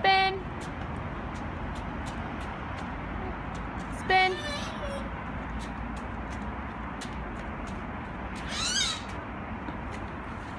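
Small children's short, high-pitched squeals while playing: one right at the start, one about four seconds in, and a wavering one near the end, over a steady low background hum.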